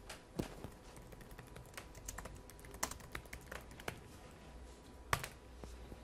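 Typing on a laptop keyboard: an irregular run of key clicks, with one louder key strike about five seconds in.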